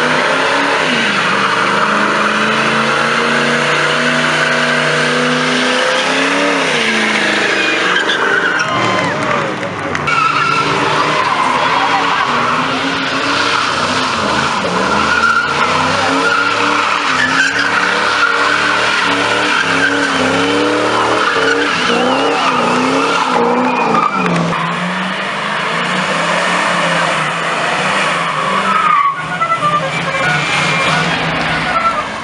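Muscle-car engines revving hard and repeatedly during burnouts, the pitch rising and falling over the steady screech and hiss of spinning rear tyres on asphalt. Several cars take their turn in succession, with abrupt changes where one burnout gives way to the next.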